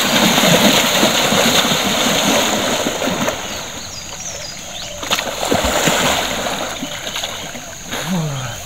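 Water splashing as a person runs and wades through shallow river water. It is loud for the first three seconds or so, then quieter, with a second burst of splashing about five seconds in.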